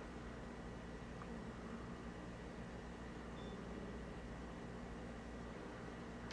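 Faint, steady room tone: an even hiss with a low hum underneath, and no distinct sounds.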